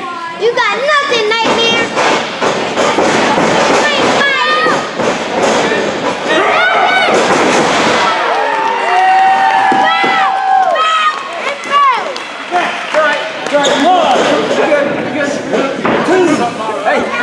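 Wrestlers slamming onto the ring canvas with repeated thuds. Spectators shout and cheer over it, with high children's voices among them and one long held yell about nine seconds in.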